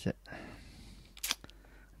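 A sharp double click a little over a second in, followed by a couple of smaller ticks, over quiet room noise.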